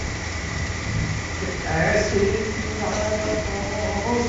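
A steady low hum of a hall's sound system and fans, with a thin constant tone above it. Faint voices come in around the middle and again near the end.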